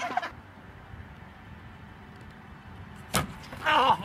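A low steady outdoor rumble, then one sharp crack about three seconds in, followed at once by a person's short cry.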